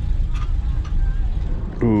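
Steady low rumble of an old Chevrolet pickup's engine and road noise, heard from inside the cab as it drives slowly over a gravel lot. A man starts talking near the end.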